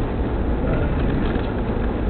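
Steady engine and road rumble heard from inside the cabin of a Mitsubishi Pajero 4x4 driving along a street.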